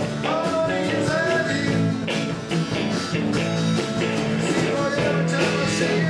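Live rock and roll band playing electric guitars, bass guitar and drums, with steady drum hits under the guitars.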